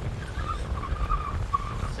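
Low, uneven wind rumble on the microphone, with seawater washing against the rocks of a breakwater.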